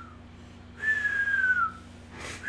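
A person whistling one long note that falls slightly in pitch, about a second in, with the tail end of an earlier whistle at the very start.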